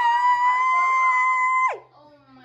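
A woman's voice holding one long, high sung note that rises slightly, then slides sharply down and stops near the end.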